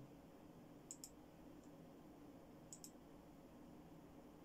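Two faint double-clicks of a computer mouse, one pair about a second in and another near three seconds, over a low steady hum.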